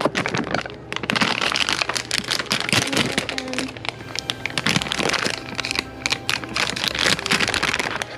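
Plastic snack bag of Butterfinger Bites crinkling and crackling continuously as it is handled and pulled open.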